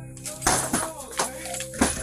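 A front door being kicked in: one loud crash about half a second in, then further knocks and rattling as it gives way.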